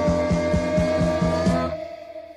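A rock song's instrumental passage: a long held note bends slightly upward over a steady beat of about four strokes a second. The band cuts out abruptly near the end into a brief break.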